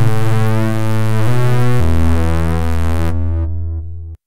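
An emulated Access Virus C synthesizer playing its 'Fripper JS' preset. It gives a sustained, rich-toned sound whose notes change about a second in and again just before two seconds. Its brightness fades about three seconds in, and it tails off near the end.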